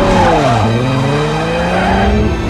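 Toyota Supra sports car accelerating hard away with tyres squealing; the engine note dips sharply about half a second in as it shifts gear, then climbs again.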